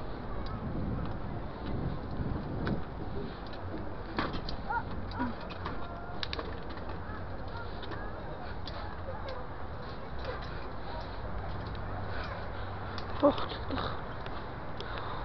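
Bicycle rolling over stone paving and cobblestones: a steady low rumble with many small rattles, birds calling in the background, and a brief loud sound near the end.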